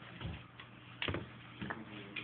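A few sharp clicks and knocks, the loudest about a second in, as a corgi puppy paws and mouths a small ball on a hardwood floor.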